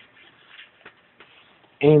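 A pause in a man's speech: faint room noise with a couple of soft clicks, then his voice resumes near the end.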